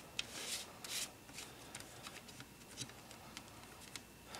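Paper insert and booklet rustling and scraping against a plastic CD jewel case as hands handle them, with light clicks. The longer rustles come in the first second or so, then scattered soft ticks.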